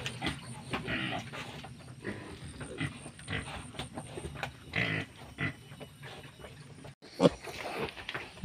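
Piglets grunting in short, irregular grunts as they root and forage together. Near the end the sound breaks off briefly and a single louder noise follows.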